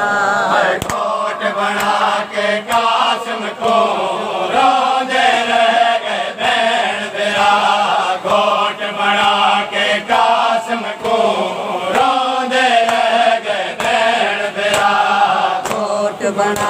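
Men's voices chanting a Shia noha lament in unison, with no instruments. Sharp hand slaps of matam (chest-beating) mark a beat roughly once a second.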